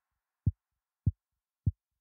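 Low, evenly repeating thumps, three in all and a little over half a second apart, each a short pulse that drops quickly in pitch.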